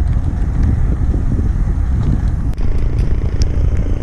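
Steady, loud low rumble of wind buffeting an action camera's microphone on a moving bicycle, mixed with road noise, with a few faint clicks in the middle.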